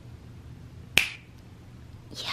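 A single finger snap about a second in, sharp and short.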